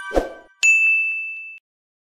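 Chime-and-ding sound effects for an on-screen subscribe/like/notification-bell graphic. A bright chime rings out at the start with a short thump, then a single sharp ding about half a second in rings on for about a second before cutting off suddenly.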